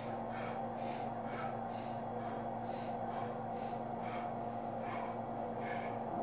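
A man breathing hard and fast through strain, about two breaths a second, while pressing against an ARX leg press. Under the breaths runs a steady hum from the machine's electric motor.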